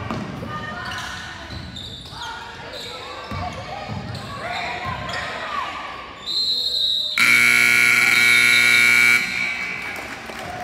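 Gymnasium scoreboard horn giving one steady, loud buzz for about two seconds, starting about seven seconds in: the horn at the end of the game clock. Before it, a basketball bouncing on the hardwood court among crowd voices.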